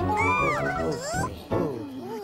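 Cartoon background music with high, gliding squeaky vocal noises from the animated bunny characters; the music drops out about a second and a half in, leaving the rising-and-falling voices.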